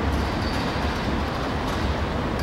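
Steady low rumble and hiss of passing vehicle traffic, even in level.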